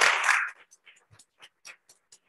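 Applause from a small room, dying away about half a second in to a few scattered claps.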